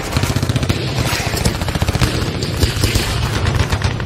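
Continuous rapid gunfire sound effects, a dense run of shots like machine-gun fire over a low rumble.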